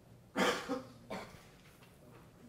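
A person coughing in a lecture hall: a sharp cough about half a second in, then two weaker ones within the next second.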